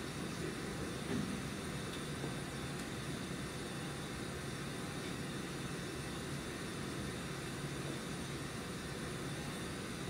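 Steady room tone: an even low hum and hiss from the room's ventilation, with no distinct events.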